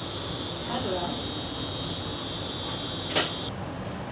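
Steady shrill chorus of cicadas coming in through the open doors of a double-deck commuter train carriage. About three seconds in, a door thuds shut and the insect sound cuts off suddenly.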